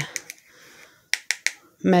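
Three quick sharp taps about a second in, a wooden craft stick knocked against a small plastic cup to shake mica powder into it, after a few lighter clicks.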